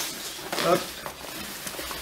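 Nylon backpack fabric rustling as the pack is handled and its top compartment is opened.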